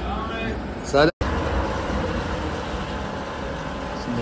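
A man's voice briefly in the first second, then a steady rushing noise from a large outdoor gas ring burner running under a cooking pot.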